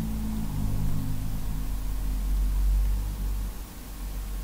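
Low steady hum with faint hiss, the hum easing off about three and a half seconds in.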